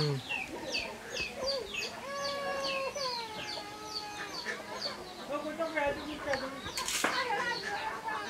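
Chicks peeping over and over, short high chirps that fall in pitch, two or three a second, with a lower drawn-out call from another bird a couple of seconds in. A single sharp clank of a metal dish about seven seconds in.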